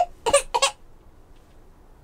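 A toddler's brief laughing, two short high-pitched bursts within the first second.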